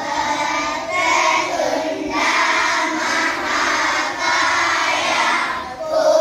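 A class of young schoolgirls singing a prayer together in unison, in short phrases with brief breaks between them.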